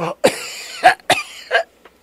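A man coughing harshly, acted for a radio drama: a rasping breath, then three sharp coughs in quick succession, as if choking and struggling for air.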